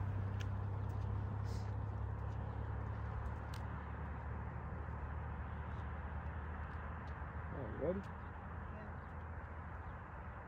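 Steady low outdoor background rumble with a short, faint call about eight seconds in.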